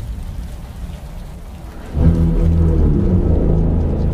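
Trailer soundtrack: steady rain hiss, then about two seconds in a loud, low, sustained musical drone swells in and holds.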